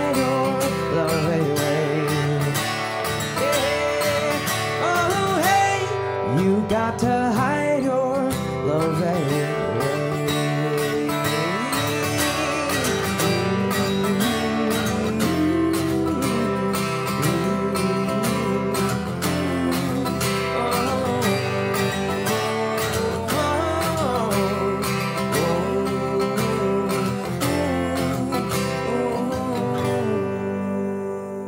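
A man singing with a strummed acoustic guitar, a solo live cover song.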